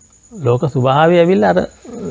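A man's voice, after a brief pause, holds one long wavering vocal sound for about a second, drawn out rather than spoken in clipped syllables.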